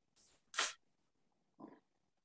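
A single short, sharp breath noise close to a microphone about half a second in, with otherwise only faint room tone.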